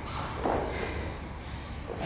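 Soft thuds and shuffling as a pair of dumbbells is set down on a rubber gym floor and the athlete drops to the floor beside them, about half a second in and again near the end.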